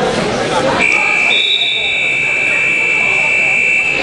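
A steady, high-pitched electronic buzzer tone sounding for about three seconds, starting about a second in, over the voices of people in a gym.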